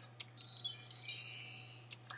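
A short, high, shimmering chime-like sound effect that swells and fades away over about a second and a half, played as the presentation slide changes.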